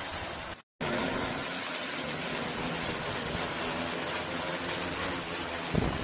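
Large six-rotor crop-spraying drone hovering and lifting off under load, its rotors making a steady multi-toned hum. The sound cuts out briefly under a second in, and a few low thumps come near the end.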